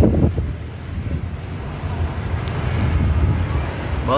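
Wind buffeting an outdoor microphone, a steady low rumble, over road traffic.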